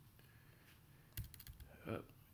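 Computer keyboard keys typed in a quick run of clicks, starting a little past the middle, as a password is re-entered.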